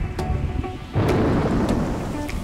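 A thunder-and-rain sound effect over light background music: a sudden rumble of thunder breaks in about a second in and is followed by steady rain noise.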